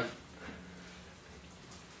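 A quiet pause with only a faint, steady low hum and room tone.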